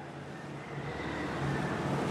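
Steady background noise that grows slightly louder, with a faint thin high tone through the middle.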